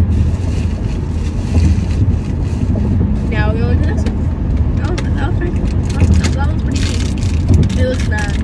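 Steady low road and engine rumble inside a moving car's cabin. A brief voice sound comes about three and a half seconds in, and a run of light rustles and clicks from handling fills the second half.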